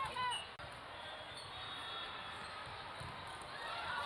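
A volleyball is struck once, a single sharp hit about half a second in, just after players call out. A steady murmur of the crowd in a large hall runs under it, and voices return near the end.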